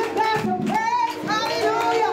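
A woman singing a gospel song into a microphone, her voice sliding between held notes over a steady sustained instrumental backing.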